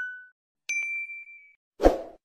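End-screen animation sound effects: a ding fading out, then a second, higher ding about two-thirds of a second in, followed near the end by a short, low-pitched sound.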